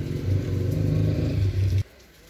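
A loud, steady low engine rumble that cuts off abruptly just before the end.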